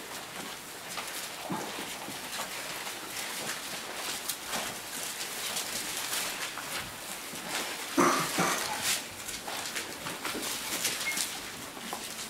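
Bible pages being leafed through, a soft rustling over room noise. About eight seconds in there is a brief louder sound.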